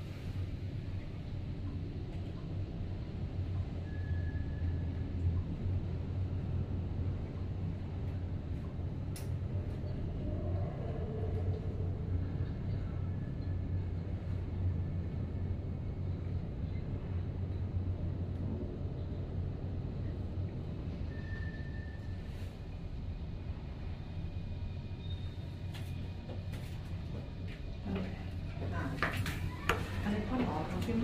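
Hitachi 5.4 m/s high-speed elevator car descending, heard from inside the cab as a steady low hum and rumble of the ride.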